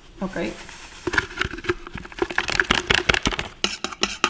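A plastic seasoning packet crinkling as it is emptied into the stainless steel inner pot of an electric pressure cooker, then a spoon clicking and scraping against the steel as the sauce is stirred, in quick repeated strikes.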